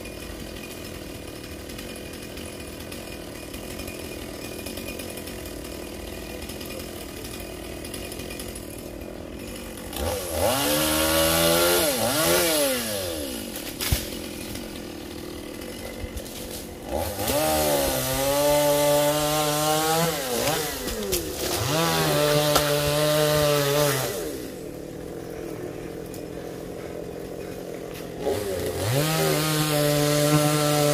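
Two-stroke chainsaw idling, then revved up three times. A short burst comes about a third of the way in, a longer one holds at high speed for several seconds in the middle, and another starts near the end; the pitch rises and falls with each rev.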